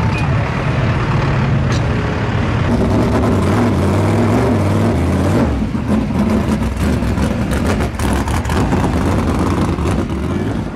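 Heavy vehicle engines running at close range, with a low note that rises a little a few seconds in and turns rough and crackly in the second half.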